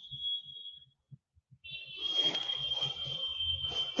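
A steady high-pitched whine that breaks off about a second in and comes back after a brief gap, with a faint hiss beneath it.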